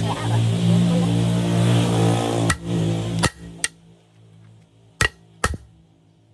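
Hammer blows on a steel flywheel ring gear while it is driven onto the flywheel: five sharp strikes, three in the first half and two close together near the end. Background music plays under the first three strikes and cuts off about halfway through.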